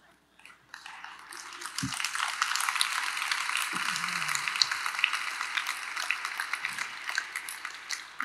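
Audience applauding: many hands clapping, swelling over the first second or two, holding steady, and thinning near the end.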